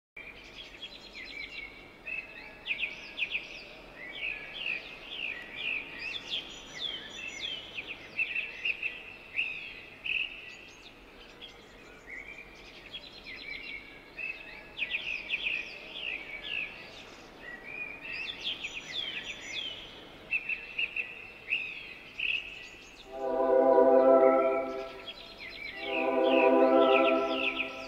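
Many small birds chirping busily and without pause, a flock calling over one another. Near the end a loud held chord of music comes in twice.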